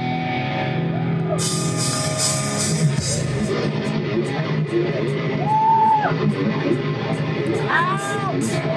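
Live rock band playing, with electric guitars and drums; the cymbals come in about a second and a half in, and a voice wails near the end.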